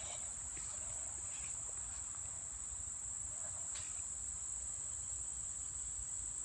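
Steady, high-pitched chorus of insects such as crickets: one unbroken shrill drone with no pauses.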